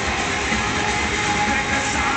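Live rock band playing loudly with no vocal: a dense wash of distorted instruments over a low, pulsing beat, with one steady note held throughout.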